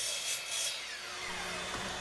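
Bosch 12-inch sliding miter saw just after a crosscut through walnut, its motor whine falling steadily in pitch as the blade spins down.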